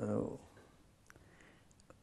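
A man's voice finishing a phrase in the first half-second, then a quiet room with a few faint, sharp clicks.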